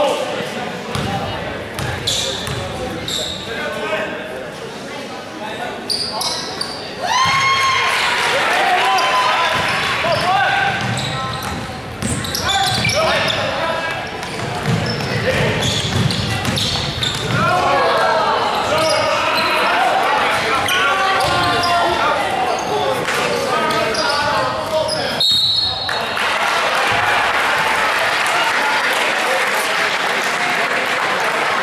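Basketball game in a school gym: many spectators shouting and cheering over one another, and a ball bouncing on the hardwood floor. About 25 seconds in there is a short, high steady whistle blast, consistent with a referee's whistle stopping play.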